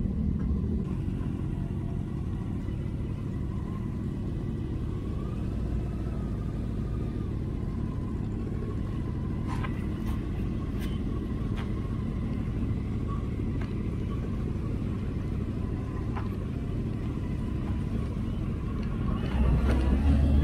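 Honda motorcycle engine idling with a steady low rumble, a few faint ticks in the middle. It gets louder shortly before the end.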